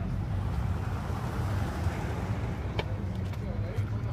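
Car engine running with a low, steady rumble, and the rush of a car going past about one to two seconds in.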